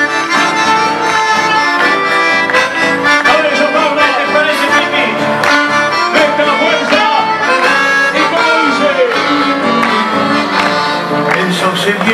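Live Argentine folk band playing a steady instrumental passage between sung verses, with no singing.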